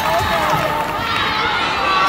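Crowd of spectators cheering and shouting, many high voices calling out over a steady hubbub.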